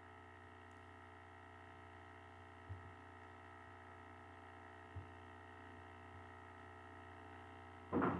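Near silence: a faint, steady electrical hum of room tone, broken twice in the middle by a brief, soft low thump.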